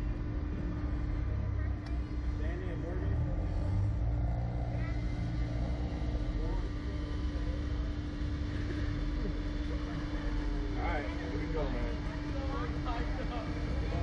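A steady mechanical hum with a low rumble under it, and faint voices of people nearby, more of them near the end.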